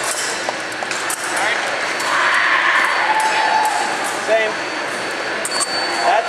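Fencing hall ambience of distant voices and scattered metallic clinks. About five and a half seconds in, an electric fencing scoring machine starts a steady high beep, signalling a registered touch.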